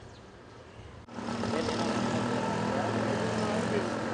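Street traffic ambience: a steady engine hum with indistinct voices in the background. It starts suddenly about a second in, after a quiet start.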